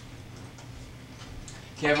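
Low steady hum with a few faint ticks: the camcorder's own running noise on the tape just after recording restarts. A man's voice comes in near the end.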